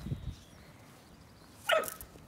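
A Border Collie puppy gives one short yip about a second and a half in, a play bark while mouthing a person's hand.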